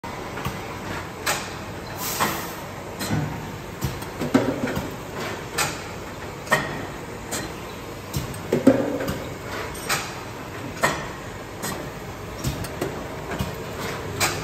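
Keck SK 11 packaging machine running on test: a steady mechanical running sound with a sharp clack repeating roughly once a second.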